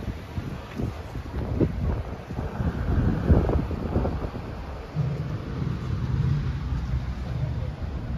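Wind buffeting the microphone over a low rumble of city traffic, strongest in a gust about three seconds in. A steady low hum sets in about five seconds in.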